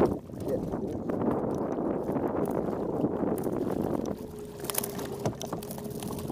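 Water slapping and sloshing against a kayak hull, with wind buffeting the microphone. A few sharp clicks come near the end.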